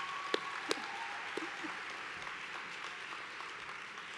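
Audience applauding, with a few sharper single claps near the start, slowly dying away.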